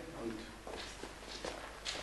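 A pause in a man's speech: room tone with a steady low hum and a few faint knocks or taps, the sharpest one near the end.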